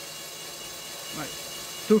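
Cordless drill running at a steady speed, spinning a small wind turbine generator's shaft, with a steady motor whine.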